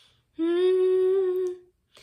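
A woman humming one steady held note for about a second, with no accompaniment, between short silences.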